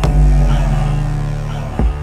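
Instrumental stretch of an electronic indie song: a deep, held bass with a kick-drum hit at the start and another just before the end.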